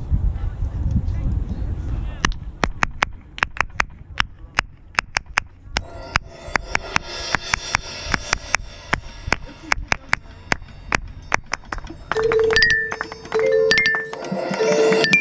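A quick, steady run of sharp clicks keeping time for a marching band's front ensemble. About twelve seconds in the band comes in with a loud held note.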